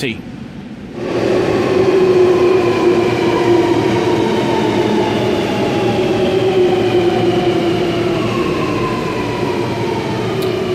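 Alstom Metropolis metro train running into an underground station platform and braking: from about a second in, a loud rumble with several whining tones that slowly fall in pitch as it slows.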